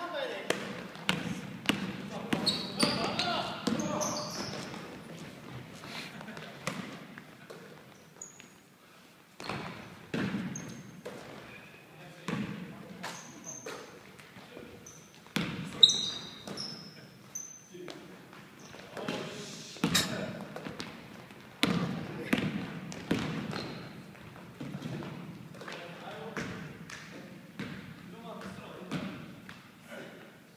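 A basketball bouncing on a hardwood gym floor during a game, as irregular sharp thuds that echo in the large hall. Short high squeaks come through the middle stretch.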